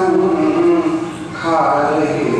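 A woman singing a Hindi song, holding long drawn-out notes. The voice dips briefly a little past the middle, then a new note begins.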